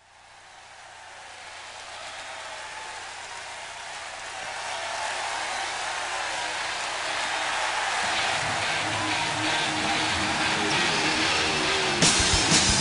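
A large concert crowd roaring and cheering in an arena, fading in from silence and growing steadily louder. Low instrument notes begin to come in during the last few seconds, just before the band starts playing.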